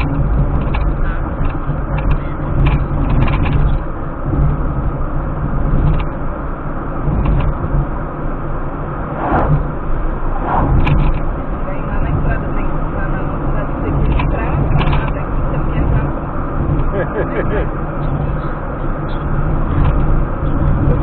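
Steady road and engine noise inside a car cruising on a highway, heard through a dashcam's microphone. An oncoming vehicle passes about halfway through with a brief swell of sound.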